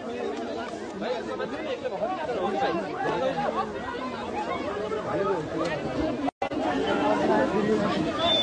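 A crowd of many people talking and calling out at once, overlapping voices with no single speaker standing out. The sound cuts out for a moment a little past six seconds in.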